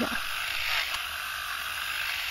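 Battery-powered electric lint remover (fabric shaver) running with a steady high whir as it is moved over a pilled knit sweater, shaving off the pills.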